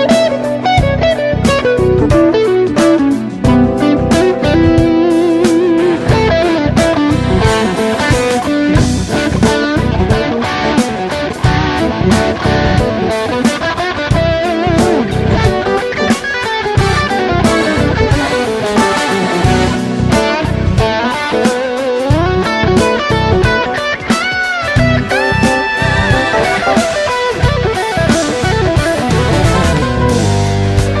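Jazz fusion recording with an electric guitar lead playing quick runs of notes up and down, with bent notes near the end, over drums and bass.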